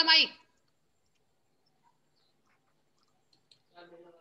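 A woman's voice breaks off about half a second in, then near silence for about three seconds. Near the end come a few faint clicks and a faint voice begins.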